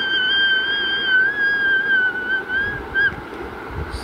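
A single high-pitched, whistle-like note held for about three seconds, wavering slightly and dipping in pitch near the end before it stops.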